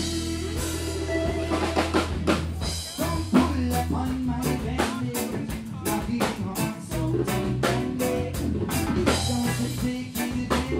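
Upbeat band music with a drum kit beat over a steady bass line.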